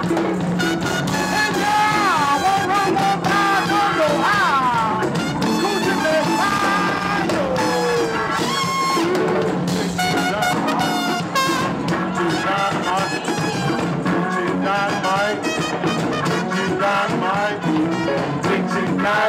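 Live band music with horns and drums, with gliding melodic lines over a steady groove, heard from within the audience.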